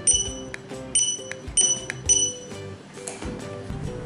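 Opticon OPR-2001 handheld barcode scanner's buzzer giving short, high good-read beeps, four or five in the first two and a half seconds at roughly half-second spacing, each confirming a successful scan now that the buzzer is re-enabled. Soft background music plays underneath.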